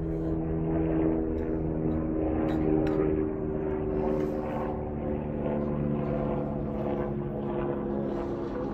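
Gas-fired melting furnace running with a steady droning hum while its crucible of molten copper alloy is skimmed, with a few faint clicks of the steel skimmer against the crucible a couple of seconds in.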